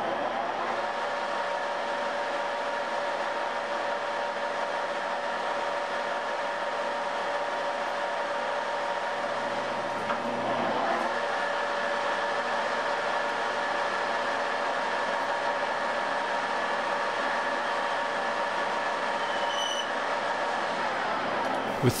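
Metal lathe running steadily, a constant whine of several tones over mechanical noise, as it turns the outside of a rifle barrel's shank to prep it for thread cutting.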